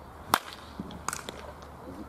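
A baseball bat hitting a pitched ball in batting practice: one sharp, loud crack with a brief ring, followed about a second later by a softer cluster of clicks.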